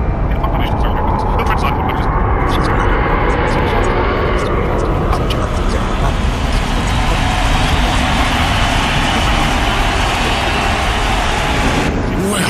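Pilatus PC-6 Porter's engine and propeller heard from inside the cabin: a loud, steady drone at power as the plane rolls for takeoff, with a few rattling clicks in the first few seconds.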